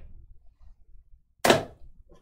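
A single sharp tap about one and a half seconds in, from thick trading cards being handled: a card set down onto the stack held in the hand.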